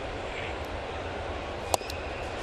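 Steady ballpark background noise, then about three-quarters of the way through a single sharp pop as a pitched baseball, a 91 mph changeup, hits the catcher's mitt for strike three.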